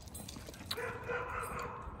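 A faint, drawn-out dog whine starting a little under a second in and holding one steady pitch for over a second.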